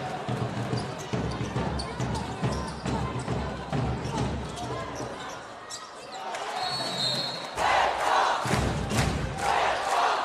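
Live basketball game sound in an arena: a ball being dribbled on a hardwood court under the murmur of the crowd. About three-quarters of the way through the crowd noise rises sharply and swells in pulses roughly once a second.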